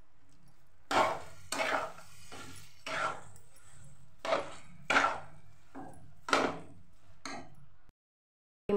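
Steel spatula scraping and knocking against a metal kadai in about ten short strokes, stirring sugar and almonds into roasted moong dal paste.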